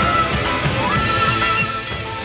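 Theme music: a high held melody note with a wavering vibrato over a steady low beat. The note breaks off and slides back up just under a second in, and the music drops in level near the end.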